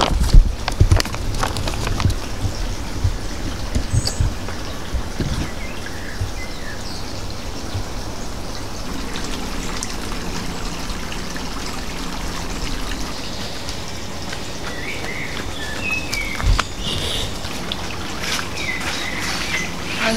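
Steady rush of running creek water, with a few short bird chirps scattered through it. A few low thumps come in the first couple of seconds.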